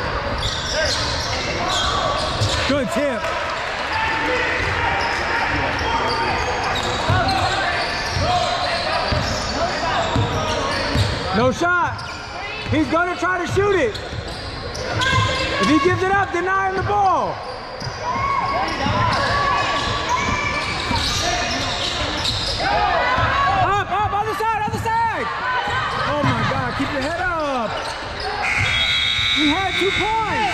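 Sounds of a basketball game in a gym: a ball dribbling on the hardwood, sneakers squeaking in short sliding chirps, and voices of players and spectators echoing in the hall. A high steady tone sounds near the end.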